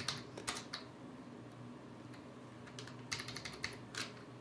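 Computer keyboard being typed on: a quick run of keystrokes at the start, a pause of about two seconds, then another short run of keystrokes near the end.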